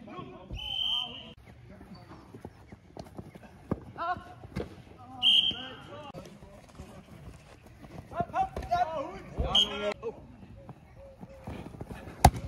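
Referee's whistle blown in two short blasts, about half a second in and again near the middle, the second one louder. Between them come shouts from players and a few dull thuds.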